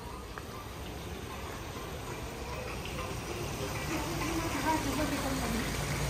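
Water splashing steadily in a tiered fountain, growing slowly louder as it comes closer.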